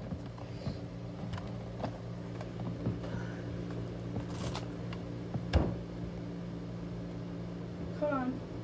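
Steady low hum in a small room, with scattered light knocks and rustles. A brief hiss comes about four and a half seconds in, and a sharper knock, the loudest sound, about a second later.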